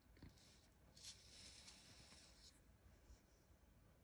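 Near silence, with a faint rustling hiss of paper craftwork being handled on a cutting mat for the first two or so seconds.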